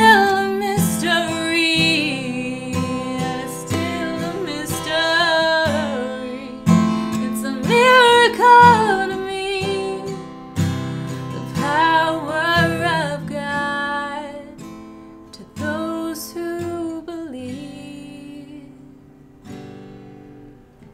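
A woman singing over a strummed acoustic guitar, in long held, sliding vocal phrases with short gaps between them. The music grows quieter over the last few seconds.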